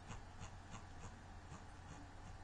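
Faint clicking of a computer mouse scroll wheel, about three clicks a second, as a document is scrolled, over a low steady hum.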